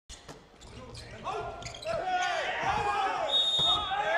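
Volleyball rally in an arena: a few sharp ball hits early on, then the crowd rising into shouts and cheers as the point is won, with a short high referee's whistle near the end.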